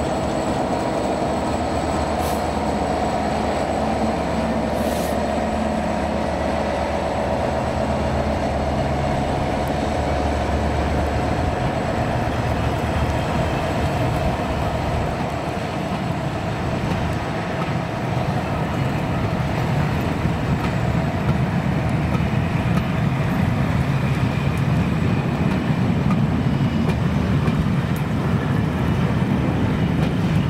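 Direct Rail Services Class 68 diesel locomotive passing with its Caterpillar V16 engine running, the drone fading over the first dozen seconds. After that the rolling of the train's coaches over the rails grows louder.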